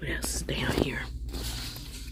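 Light scraping and rustling of stretched art canvases being flipped through by hand, after a woman's short remark, over a low steady hum.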